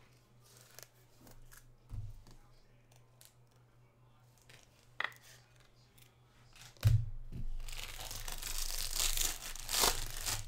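A loud thump about seven seconds in, after a couple of faint knocks, then the foil wrapper of a Topps Jumbo trading-card pack crinkling and tearing as it is handled and opened, through the last couple of seconds.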